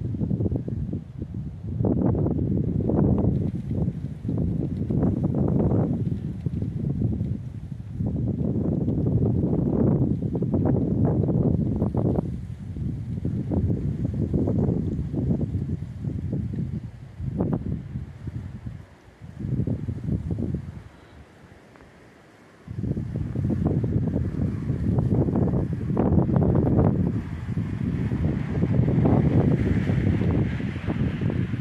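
Wind buffeting the microphone: a low rumble that comes and goes in uneven gusts of a few seconds each, dropping away briefly about twenty seconds in.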